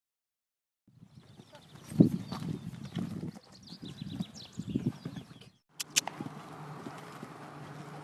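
Horse's hooves thudding on an arena surface as it canters and jumps, in uneven beats with the loudest about two seconds in. After a brief break about halfway through comes a click, then a steady low hum.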